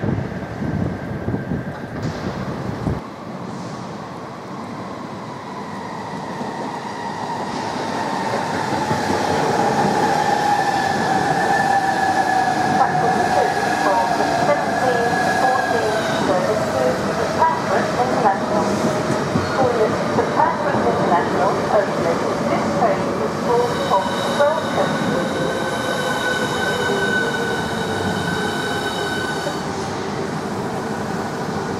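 A Southeastern Class 395 Javelin electric train runs into the platform, getting louder over the first ten seconds. Its motor whine falls steadily in pitch as it slows, with many brief high squeals from underneath. Near the end, a few steady high tones join in.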